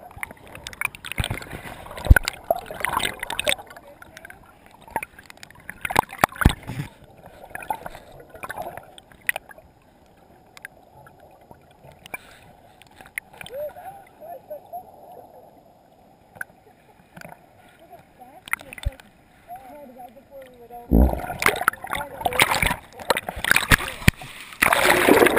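Whitewater heard from a submerged camera after a capsize: muffled churning water with knocks and bubbling gurgles, quieter through the middle. About 21 seconds in it turns to loud splashing as the camera nears or breaks the surface.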